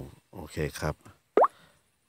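A single short rising plop about a second and a half in, a smartphone's touch-feedback tone as an on-screen button is tapped, after a man says "okay" in Thai.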